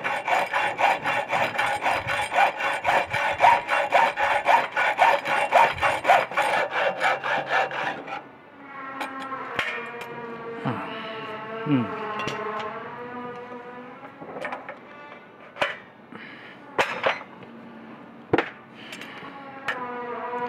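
Hand hacksaw cutting through a metal tube held in a vise, with fast, even back-and-forth strokes that stop about eight seconds in as the cut goes through. A few light knocks follow as the cut tube is handled.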